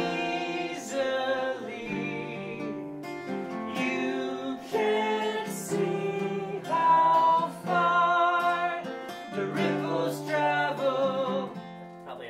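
A man singing a short sing-along refrain over strummed acoustic guitar, showing the audience how the part goes.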